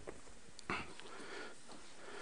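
Faint room tone in a large hall, with a short soft noise about two-thirds of a second in and a few small clicks.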